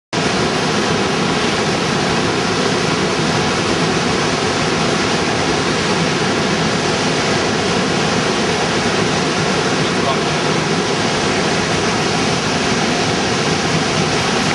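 Steady, loud rushing noise of wind and moving water, with a faint even hum under it.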